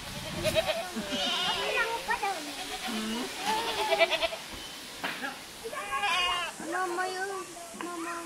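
Goats bleating several times, mixed with young children's voices.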